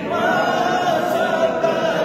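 A group of men's voices chanting together in unison, in long drawn-out, gliding notes.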